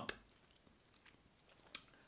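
Faint mouth sounds of a whisky taster working a sip around the mouth, with a single sharp click near the end.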